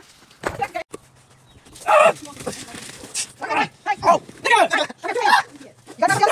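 People's voices calling out in short shouts, over a faint steady low hum.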